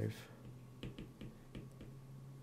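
A stylus tapping lightly on a tablet screen while numbers are handwritten: about six small, faint clicks in the second half.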